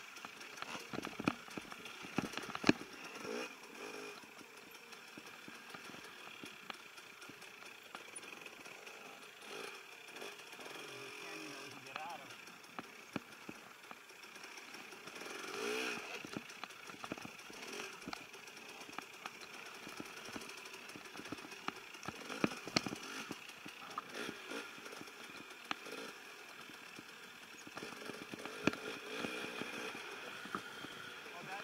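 Dirt bike engine labouring at low revs up a steep, rocky climb, revving up briefly a few times, with frequent knocks and clatters from the bike over rock.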